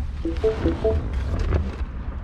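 Faint music with a few short melodic notes about half a second in, over a steady low rumble.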